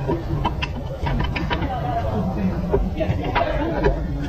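A run of light metallic clicks and knocks as a CV axle's splined outer end is worked into the wheel hub bearing, over a steady workshop rumble.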